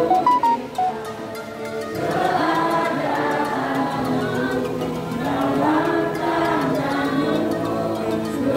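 A congregation singing a hymn together, many voices in unison; the singing thins out about a second in and comes back fully about two seconds in.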